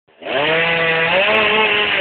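Chainsaw running at high speed, cutting into the trunk of a dead tree; it starts about a quarter second in and holds steady, rising slightly in pitch midway.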